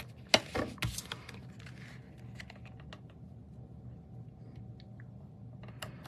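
Cardstock layers being handled, set down and pressed onto a card base: a few sharp clicks and taps in the first second, then faint scattered ticks.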